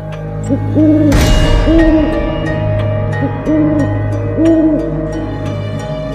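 Owl hooting: about five deep hoots, each roughly half a second long and about a second apart, over a low, eerie music drone. A sudden crash-like swell comes in about a second in.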